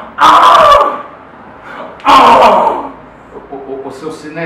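A man's loud, overdone cries of anguish, two drawn-out shouts of "Ah!" about two seconds apart, each sliding down in pitch at the end: a melodramatic act of grief.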